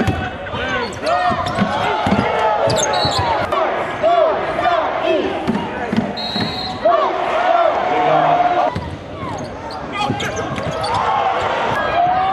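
Live basketball game sound on a hardwood court: many short sneaker squeaks one after another as players cut and stop, with the ball bouncing and voices in the arena.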